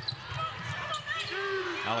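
A basketball dribbled on a hardwood court, a few short bounces over a low murmur of arena noise.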